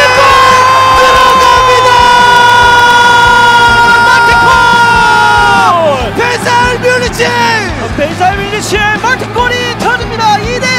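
TV football commentator's goal call: the scorer's name shouted with the last syllable held in one long high cry for nearly six seconds, sliding down as it dies away. Shorter excited voice sounds follow over a steady low background bed.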